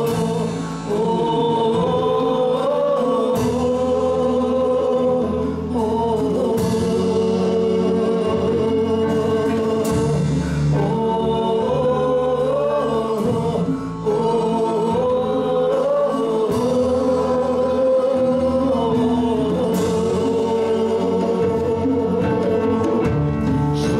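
Live church worship band playing a slow song, with keyboard, guitar and drums under several voices singing held notes. A cymbal stroke rings out about every three seconds.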